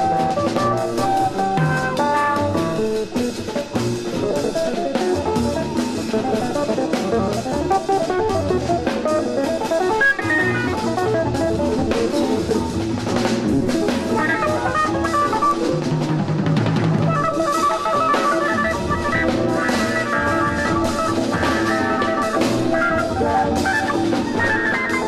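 Live jazz from a 1971 vinyl LP: a small jazz group playing, with a drum kit and cymbals keeping time under a busy line of melody and low bass notes.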